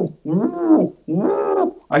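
A man imitating pigeon cooing with his voice: two drawn-out coos, each rising and then falling in pitch. It mimics the cooing of cock pigeons, the 'music' that tells a breeder separated birds are ready to pair.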